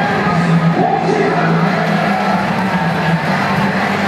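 Music playing over the stadium's public-address speakers, with a crowd cheering.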